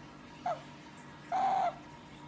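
Asian small-clawed otter calling while being stroked: a short falling chirp, then a longer steady high call.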